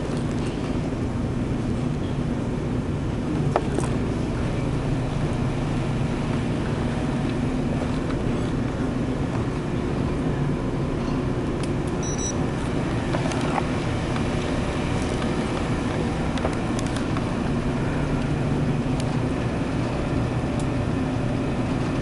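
Steady low hum of a ship's interior, the constant drone of the liner's machinery and ventilation heard in its corridors, with a few faint clicks.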